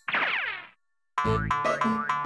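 Cartoon sound effect sliding down in pitch for under a second, then a brief gap of silence and upbeat cartoon background music with a beat starting just over a second in.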